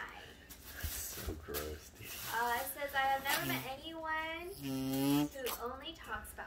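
Voices speaking, not made out as words, with a rustle of paper and tissue from a gift bag in the first two seconds.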